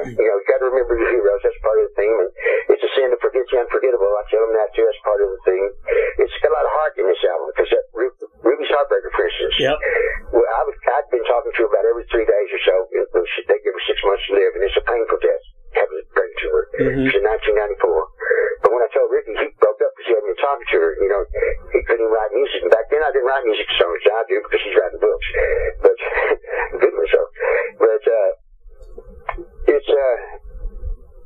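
Continuous talking with a thin, narrow, phone-line sound, which stops shortly before the end.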